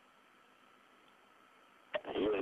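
Near silence: a faint, steady hiss with a faint steady tone beneath it.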